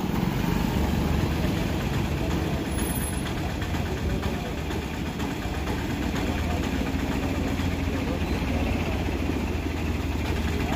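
Motor vehicle engines idling in street traffic: a steady low engine sound with no sharp events.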